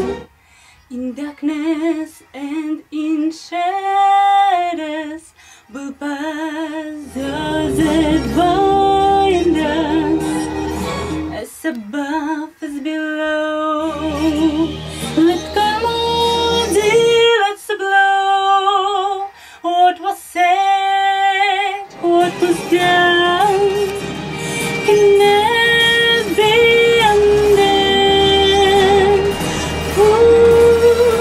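A woman singing wordless, ornamented melismatic runs with strong vibrato, her unprocessed studio vocal. A low backing sound drops out twice, leaving the voice alone for a few seconds each time.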